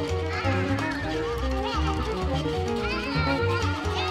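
Music: a violin playing high sliding, gliding lines over a repeating low bass pulse.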